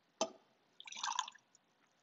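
A metal paten clinks once against the rim of a metal chalice, then about half a second later comes a short patter of small taps and drips as the paten is tipped and tapped over the chalice while the vessels are purified after communion.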